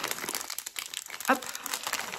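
A packaging bag crinkling as mini circular knitting needles are taken out of it: a quick, irregular run of small crackles.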